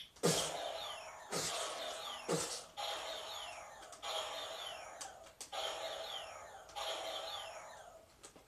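Electronic firing sound effects from a light-up toy blaster: a series of zaps about once a second, each starting sharply and sweeping down in pitch.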